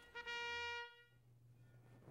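A single brass note, trumpet-like, held steady at one pitch for under a second and then cut off, followed by near silence with a faint low hum.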